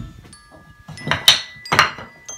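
Painted toy blocks knocking together as a child shifts them in a pile: two short clacks about half a second apart, a little over a second in.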